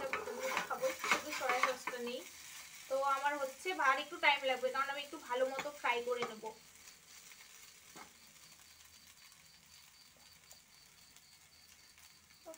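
A spatula stirring and scraping chow mein noodles in a frying pan, with frying sizzle, busiest in the first couple of seconds. A person's voice is heard over it in the middle, and after about six and a half seconds only a faint sizzle and an odd click remain.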